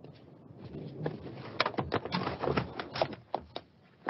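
A quick, irregular run of knocks and clatters, as of hard objects being struck or knocked about. It starts about a second in, comes thickest in the middle and stops just before the end.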